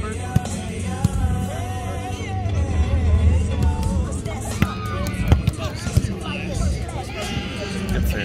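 Music with singing plays throughout, with background chatter. Over it come a few sharp slaps of hands striking a volleyball during a rally, the loudest about five seconds in.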